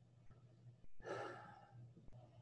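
A person's short breath out, close to the microphone, about a second in, over a faint steady low hum.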